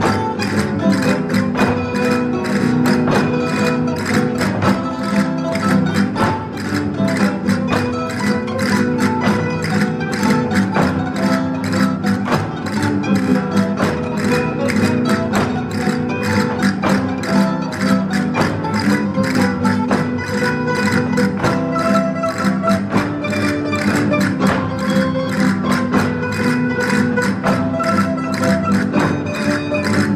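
Spanish folk dance music with plucked strings, played at a steady, fast beat, with castanets clicking in rhythm throughout.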